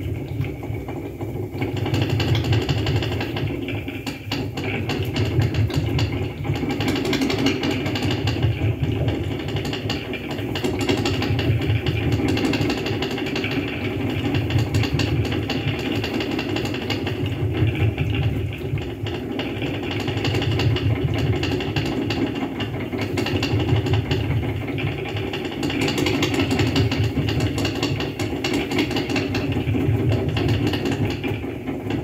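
Live electronic noise music played through a PA: a dense, grinding low drone that swells and fades in uneven waves about every two seconds, with buzzing, crackling noise layered above it.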